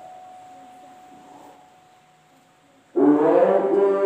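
A quiet pause, then about three seconds in a voice starts chanting Qur'an recitation (tilawah) through a microphone in a long, held melodic line.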